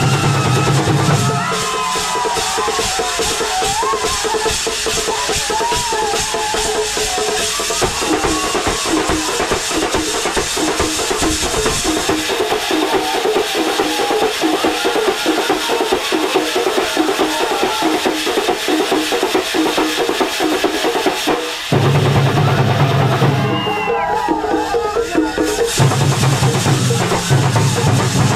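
Thambolam percussion band playing a steady beat of drums and clashing hand cymbals, with a wavering melody above. A deep bass beat drops out after about a second and a half and comes back about three-quarters of the way through, right after a brief dip in loudness.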